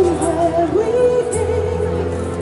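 Live pop band music: a woman singing into an amplified microphone over strummed acoustic guitar, electric guitar and a steady low bass line. Short high percussion strokes mark the beat about once a second.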